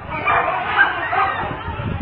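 Dogs barking and yelping as they attack a man, heard at some distance, with people's voices in the background.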